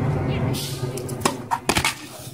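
Several sharp knocks and scuffs in quick succession about a second and a half in, as a tennis player falls onto an asphalt court with his racket, over a steady low hum.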